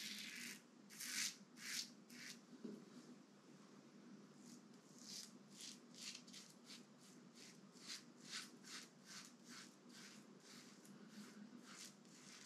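Rockwell 6S stainless steel safety razor with a Kai blade scraping through two days' stubble on lathered skin in short strokes: a few louder strokes at first, then a quicker run of about two to three strokes a second.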